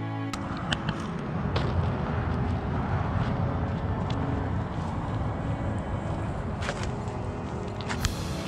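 Wind rumbling on the microphone at the shoreline, with a few sharp clicks and knocks as a cast net and its weighted line are handled.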